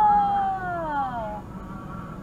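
A person's long, drawn-out wordless 'ohh' in the car cabin. It rises, then slides slowly down in pitch and fades after about a second and a half, over the steady hum of a car idling.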